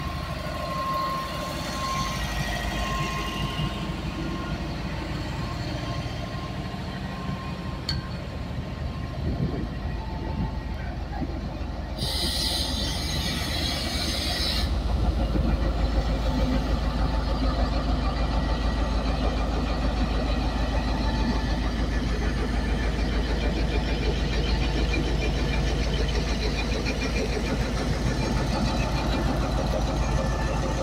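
Passenger train rolling slowly past at close range, coaches first, with a faint high wheel-on-rail tone at the start. About halfway through comes a hiss lasting a couple of seconds, and then the diesel locomotive's engine passes close by, running with a loud, steady low rumble.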